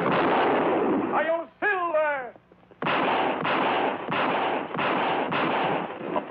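Revolver gunfire, a horse whinnying twice with falling, quavering pitch, then a rapid run of shots about two or three a second, on an old, narrow-band film soundtrack.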